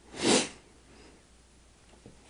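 A woman sniffing once, a short breath drawn in sharply through the nose, lasting about half a second near the start.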